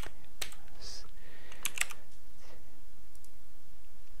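A few separate keystrokes on a computer keyboard, irregularly spaced, as an instruction is typed in.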